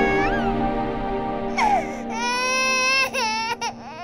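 An infant crying over soft background music: a short cry just after the start, then a long wail from about a second and a half in that breaks into short cries near the end.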